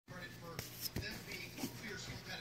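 Two short, sharp knocks about half a second apart, over a low steady hum.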